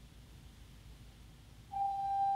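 Pipe organ in a pause between phrases, with only faint low room noise, then a single high sustained note starts near the end and holds steady.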